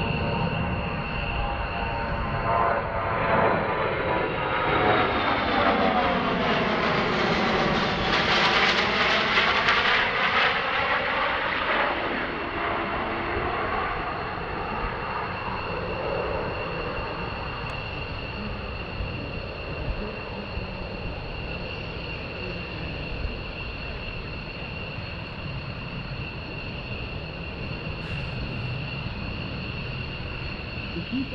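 Four Pratt & Whitney F117 turbofans of a C-17 Globemaster III on a low demonstration pass: the jet noise builds to its loudest about eight to ten seconds in, with a sweeping whoosh as the aircraft goes by, then settles to a quieter rumble as it flies away.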